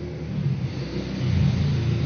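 A low rumble that grows louder about a second in.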